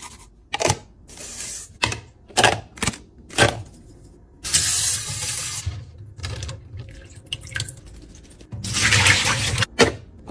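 Kitchen tap water running over blackberries in a plastic colander in a stainless-steel sink, in two spells of a second or two each, about halfway through and near the end. Before that come several sharp clicks and taps of clear plastic food containers handled on a granite counter.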